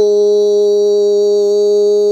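A loud, steady held tone at one unchanging pitch, rich in overtones, which began abruptly just before this moment.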